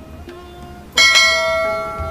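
A bell struck once about a second in, ringing on with several steady tones that slowly fade, over faint background music.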